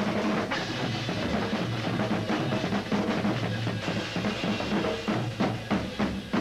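Band music with a loud drum kit to the fore, the drums breaking into a run of separate hard hits near the end.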